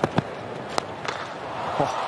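Stadium crowd murmur at a cricket ground with a few sharp knocks from the pitch, the loudest a crack about a fifth of a second in; among them is the cricket bat striking the ball as a short delivery is hit away.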